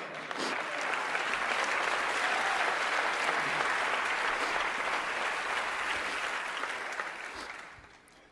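Audience applauding steadily. The applause fades out in the last second.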